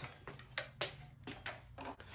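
A few light clicks and taps, about four spread over two seconds, from handling a plastic Ernst Socket Boss tray loaded with sockets on their rails, over a faint steady hum.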